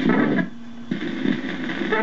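A 12-volt electric phonograph motor runs with a steady hum while the stylus of a Stanton 500 cartridge is set on the cylinder, and the amplified surface noise rushes in two spells with a brief lull between.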